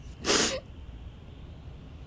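A woman's single sharp, noisy sobbing breath while crying, lasting about a third of a second shortly after the start.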